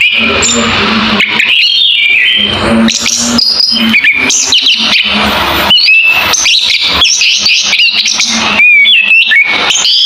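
Caged chestnut-capped thrush (anis kembang) singing loudly, a fast, varied run of chirps, whistled slurs and trills with hardly a pause.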